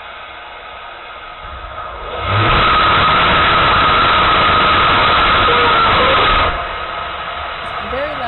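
Scale model of NASA's Space Launch System, with four small liquid engines and two solid motors, firing on a test stand. Its exhaust noise builds about two seconds in, holds very loud for about four seconds, then cuts off. A steady rush of the water sound-suppression spray is heard before and after the firing.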